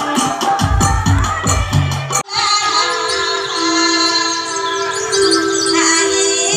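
A devotional bhajan: rhythmic drumming with singing, cut off abruptly about two seconds in and replaced by amplified voices singing long held notes with only light percussion.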